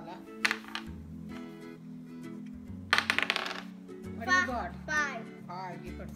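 A small die rattles and clatters in a quick burst of clicks about halfway through, a roll in the Mouse Trap board game. Children's background music plays throughout.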